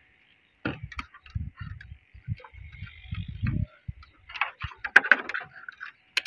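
Handling noise from a handheld digital multimeter and its test leads: irregular soft knocks through the first half, then a quick run of sharper plastic clicks around the fifth second.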